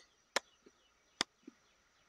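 Two sharp clicks, a man imitating the popping, sucking sound that baitfish make under a floating grass mat as they feed on insects and larvae.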